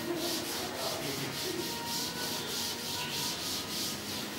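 A chalkboard duster rubbing chalk off a blackboard in quick back-and-forth strokes, about four a second.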